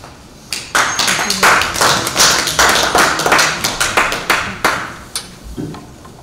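Audience applauding, starting about half a second in and dying away after about five seconds.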